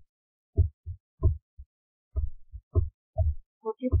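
A stylus knocking against a writing tablet during handwriting: about a dozen soft, dull knocks in an uneven rhythm.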